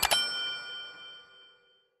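Sound-effect chime for a notification-bell button: a quick double click, then a bright ringing ding that fades out over about a second and a half.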